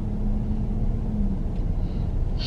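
Steady low rumble of a car heard from inside the cabin, with a faint steady hum that stops a little past halfway.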